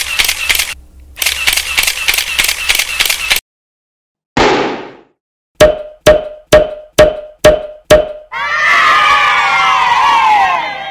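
Edited intro sound effects: a fast rattling clatter, a short swish about four seconds in, seven quick pops about a third of a second apart, then a burst of voices cheering near the end that fades out.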